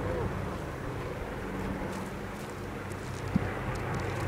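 Distant firefighting water bomber's propeller engines droning steadily as it skims the lake to scoop water and lifts off, with wind on the microphone. One brief knock about three seconds in.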